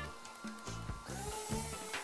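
Background music with a steady beat. About a second in, a rising whine joins it as the RC VTOL plane's two Racerstar 1108 4000KV brushless outrunners spool up with two-blade drone props for a vertical takeoff.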